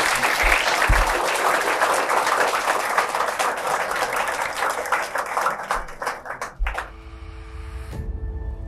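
Audience applause: a dense, steady round of clapping from a room full of people that dies away about six and a half seconds in. Soft music with held notes comes in as it ends.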